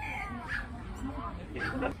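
A dog gives a short whine that falls in pitch near the start, over background voices.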